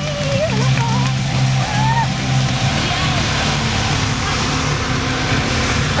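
Engine of a white vintage-style open-top car running with a steady low hum as the car rolls slowly past close by, with people's voices over it in the first couple of seconds.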